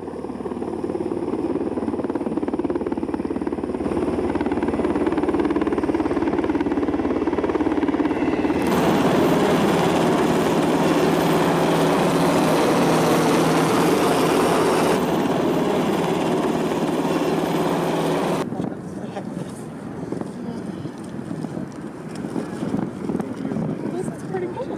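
UH-60 Black Hawk twin-turbine helicopters flying overhead, a steady rotor and engine noise that grows louder toward the middle and drops off sharply about three-quarters of the way through, leaving softer outdoor noise with wind on the microphone.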